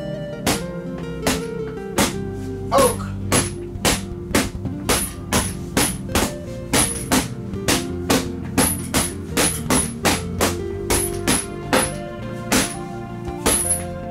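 Wooden sticks striking a hanging heavy boxing bag in a fast, uneven series of sharp whacks, two to three a second, over steady background music.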